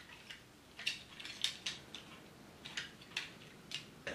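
Plastic parts of an NBK-01 Scraper transforming robot toy being rotated and snapped closed by hand: a scatter of light clicks and rattles, about eight or nine in all.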